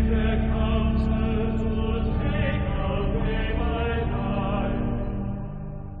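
Chanted sacred vocal music over held low tones, fading down near the end.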